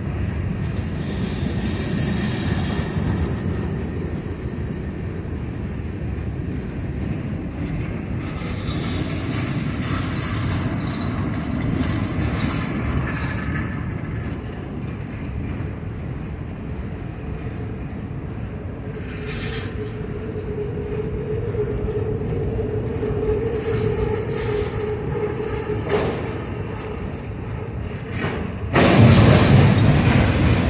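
Freight cars rolling past close by, their wheels running on the rails in a steady rumble. A steady squeal joins for about six seconds past the middle, and the sound jumps louder near the end.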